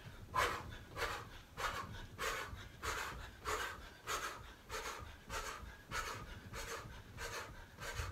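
A man breathing hard from fast high knees on the spot: rhythmic panting, a little under two breaths a second.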